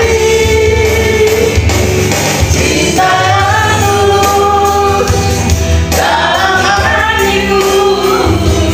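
A song: a voice singing long held notes over a steady backing track.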